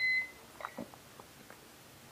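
A single short electronic key beep from a Davis Vantage Vue weather console as a button is pressed, followed by a few faint clicks.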